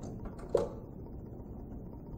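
Low background room noise with a steady low hum, broken by one brief sharp sound about half a second in.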